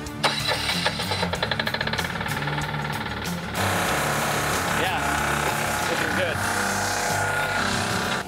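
Compressed earth block press starting up and running: a fast, even ticking at first, then a louder, steadier machine sound from about three and a half seconds in as it presses soil into blocks.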